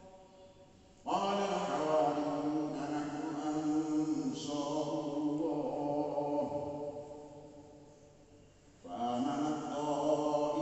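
A man chanting through a mosque's loudspeaker system in long melodic phrases: one begins about a second in and fades away in a long echo, and the next starts near the end.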